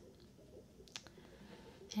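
Faint water-and-bubble ambience from the Sharks 3D desktop app played through computer speakers, with a single sharp click about a second in.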